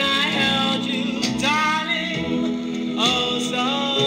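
A late-1950s vocal group record playing: a lead voice gliding between notes over sustained backing harmonies.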